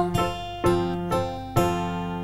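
Acoustic guitar playing a short instrumental phrase in a children's song: notes struck about every half second, each left to ring and fade.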